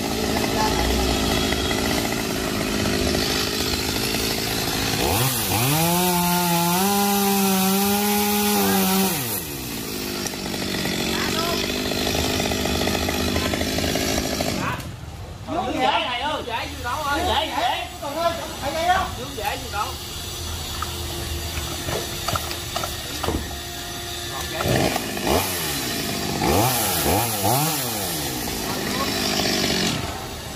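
Chainsaw running while cutting branches of a large fig tree. It revs up sharply about five seconds in, holds high for a few seconds, then drops back. In the second half it runs lower and more unevenly.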